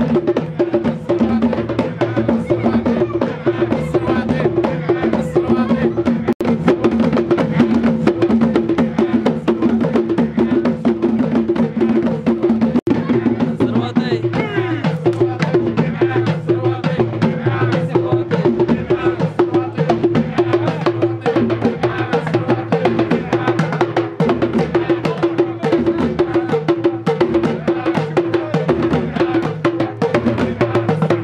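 Hand-beaten frame drums played in a fast, steady rhythm, with several voices chanting over them: the drum-and-chant music of a baroud musket dance.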